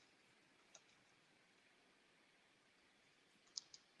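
Near silence with a few faint clicks, one about a second in and two or three close together near the end.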